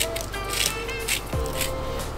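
Background music: held notes over a steady bass line, with a light beat about twice a second.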